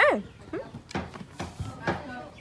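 Baby macaque giving a short call that falls in pitch at the very start, followed by a few light knocks.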